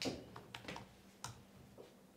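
Laptop keyboard keys tapped a handful of times, faint separate clicks at uneven intervals as a passage is looked up.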